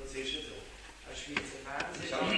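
Indistinct voices talking in a room, with a single sharp click about one and a half seconds in.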